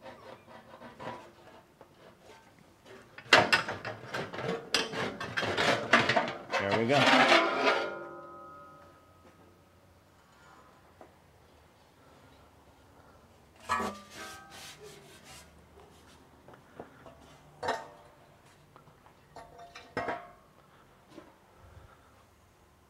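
A welded sheet-metal skin being worked loose from a tacked frame: a few seconds of scraping, knocking and rattling metal, ending in a ringing tone that dies away. A few single clanks follow as the freed panel is handled.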